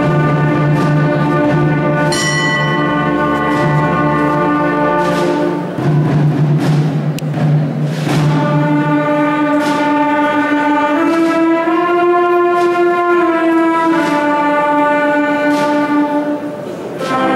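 A brass band with saxophones and tubas playing slow, sustained chords, with a light percussion stroke about once a second. The chords change about six seconds in and again near eleven seconds, and the sound echoes in a large stone church.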